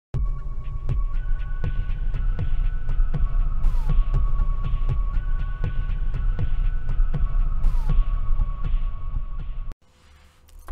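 Electronic intro soundtrack: a deep throbbing hum under faint steady high tones, with a regular pulse about every three-quarters of a second and a pattern that loops about every four seconds. It cuts off suddenly near the end.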